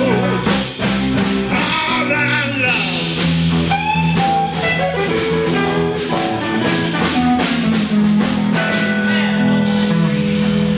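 A live blues-rock band playing, with electric guitars, bass and drum kit.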